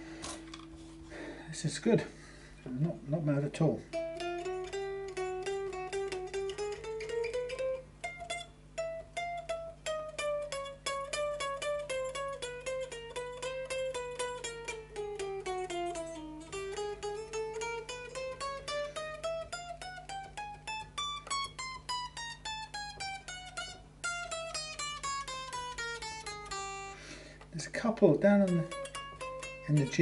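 Fender Duo-Sonic short-scale electric guitar played in single-note runs up and down the neck, with a few strums near the start and string bends near the end. It is being played to test a freshly lowered action for fret buzz: a few very tiny buzzes, and notes just about choking on the high E bends.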